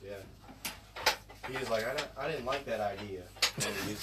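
Indistinct voices talking over a low steady hum, with a few sharp clicks and knocks of equipment being handled.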